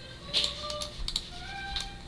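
A few scattered sharp clicks of a computer mouse and keyboard, with faint short held tones behind them.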